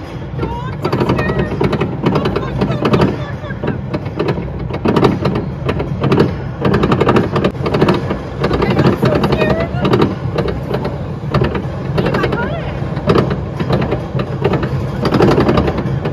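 Roller coaster running at speed, its car rattling and clattering along the track in a dense, uneven stream of knocks, with riders' voices mixed in.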